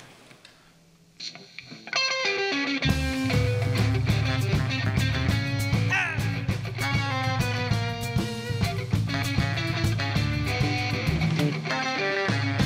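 Electric guitar and band starting a song's instrumental intro: after a quiet first two seconds, guitar notes begin, and a low bass line and the rest of the band join a moment later and play on steadily.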